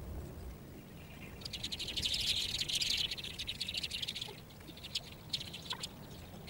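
A bird's rapid chattering trill, a dense run of fast clicks lasting about three seconds from a second and a half in, followed by a few short separate chirps near the end.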